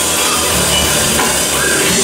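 Live rock band playing loud, steady music driven by a drum kit, in an instrumental passage without singing.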